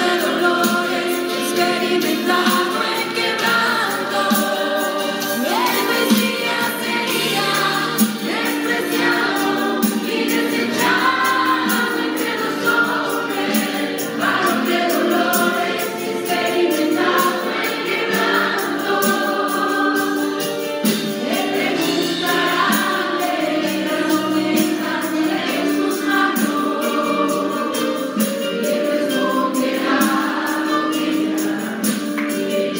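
A choir singing a gospel hymn, with many voices holding and moving between sung notes at a steady level.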